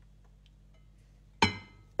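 A single sharp metallic clink about one and a half seconds in, the stainless steel saucepan knocking against the frying pan, with a short ringing tail. Before it there is only a faint low hum.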